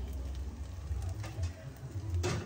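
A steady low hum under faint hiss, with a few faint short clicks.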